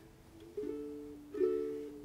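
Ukulele strumming chords: two strums, about half a second and a second and a half in, each ringing out and fading.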